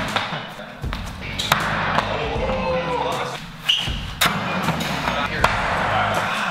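Background music with voices over it, and a few sharp thuds of throwing axes striking wooden target boards.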